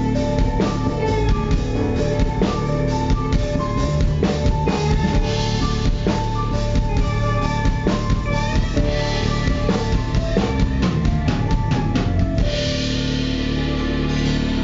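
Live band playing an instrumental passage: a Pearl drum kit's bass drum and snare keeping the beat under electric guitars. A quick run of drum hits comes about ten seconds in, after which the drums stop and the guitars ring on.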